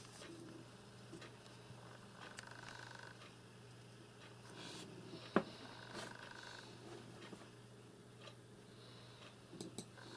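Faint room noise with a steady low hum, and one sharp click about five and a half seconds in.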